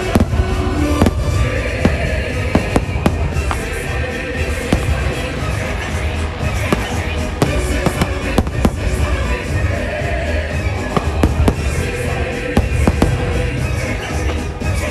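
Aerial fireworks shells bursting in a rapid series of sharp bangs and crackles, mixed with loud show music.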